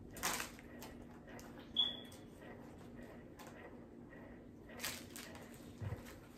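Quiet rustling and a few light clicks from hands handling cardboard candy boxes and gingerbread-house pieces, with one brief high squeak about two seconds in.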